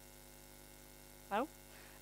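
Faint, steady electrical mains hum with a fixed pitch, heard through a brief pause in a talk.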